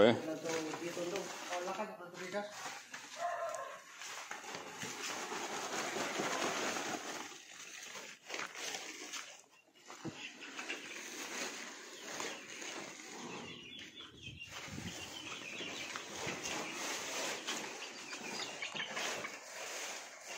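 Chickens clucking, with voices talking in the background.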